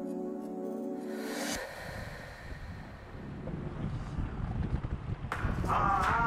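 Soft background music stops about a second and a half in, giving way to the rough, gusting rush of wind buffeting the microphone on a moving inflatable boat over choppy water. A new music track comes in near the end.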